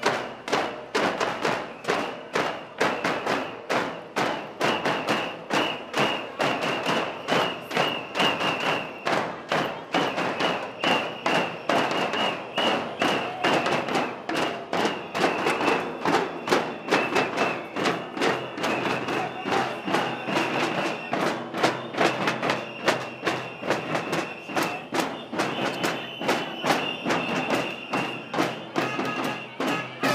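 Several hand-carried marching drums beaten in a steady rhythm, about two to three strong beats a second with lighter strokes between. A high held tone runs over much of it, breaking off now and then.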